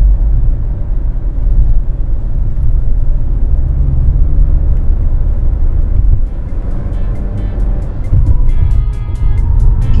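Road and engine rumble inside a moving car's cabin at highway speed. Background music with a steady beat comes in about two-thirds of the way through and grows over the rumble.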